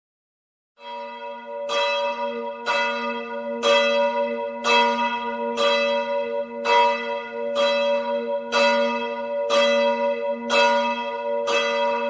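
A church bell tolling at an even pace, about one stroke a second, about a dozen strokes. Each stroke rings on into the next over a steady low hum.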